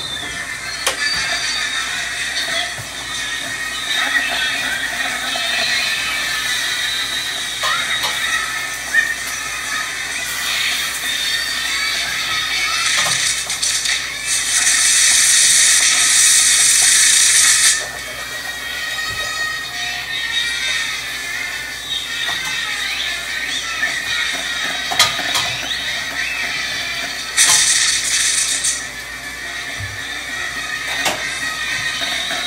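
Fireworks spraying sparks: a loud hissing rush for about four seconds midway and again briefly near the end, with scattered sharp pops throughout.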